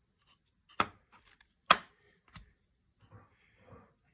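Small plywood magnetic wing-rib holders being handled: two sharp clicks about a second apart, then a fainter third click.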